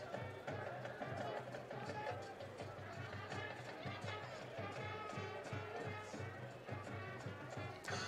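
A marching band playing in the stadium, heard faintly, with a steady drum beat under held horn tones.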